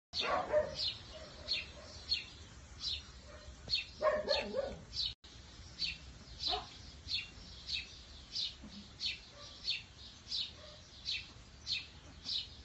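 A small bird chirping steadily, a short high chirp about every two-thirds of a second. A puppy gives brief whines in the first second and again about four seconds in.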